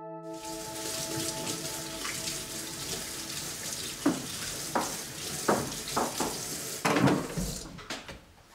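Kitchen tap running into a sink as dishes are washed, with several clinks and knocks of a knife and dishes against the sink from about halfway through. The water stops just before the end.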